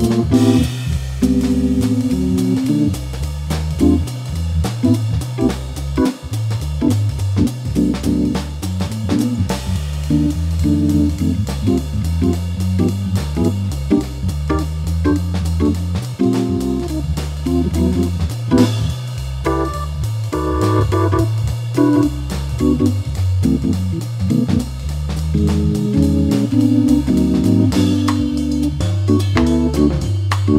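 Jazz backing track on Hammond organ and drum kit, with no lead instrument. The organ plays a moving bass line and short chord stabs, while the drums keep swing time on the cymbals.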